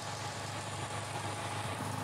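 Steady low background rumble with a faint hum and no distinct event.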